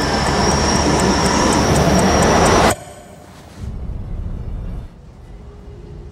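Subway train rushing through an underground station: a loud rushing rumble with a high steady whine that cuts off abruptly a little under three seconds in, leaving a quieter low rumble.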